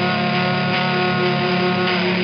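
Fuzz-distorted electric guitar played through an amp, a chord struck at the start and left to ring, sustained and steady.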